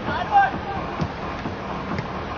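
Shouted voices of players on a football pitch in the first half-second, then a single sharp knock about a second in, over the general noise of play.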